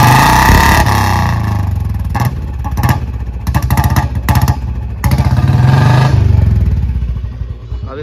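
Royal Enfield Bullet 350 single-cylinder engine running and revved in blips, with two loud swells, one near the start and one about five seconds in, and several sharp pops between them. The engine is being run to blow out water that got into the silencer during a wash.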